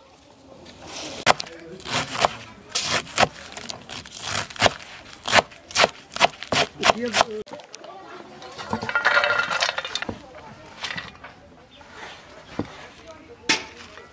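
A kitchen knife chopping fresh spinach on a wooden board, a quick run of sharp chops about three a second. The cut leaves then rustle as they are gathered, and one sharp knock comes near the end.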